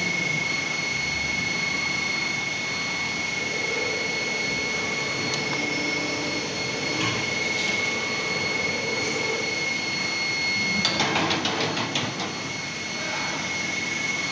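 Plastic injection molding machine running during a test of a 12-cavity spoon mold: a steady machine noise with a constant high whine. About three-quarters of the way through comes a quick rattle of clicks, as the mold cycles.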